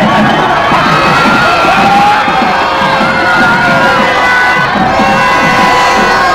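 Large crowd shouting and cheering, many voices overlapping at a steady, loud level.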